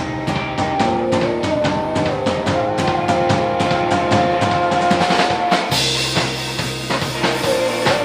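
Live rock band playing loud: electric guitar and drum kit keeping a steady beat, with a woman singing long, held notes. About six seconds in the music moves into a fuller, louder section with cymbals and a heavier low end.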